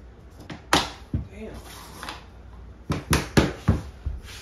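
Hammer knocks tapping a rigid vinyl floor plank into place: two or three sharp knocks about half a second to a second in, then a quick run of about five near the end.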